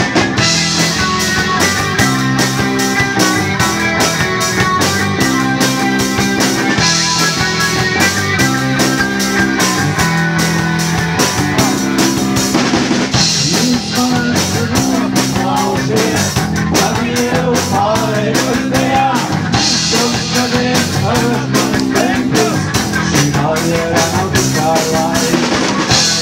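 Live post-punk rock band playing: a driving drum-kit beat under a repeating bass and electric guitar riff, with a cymbal wash swelling every few seconds.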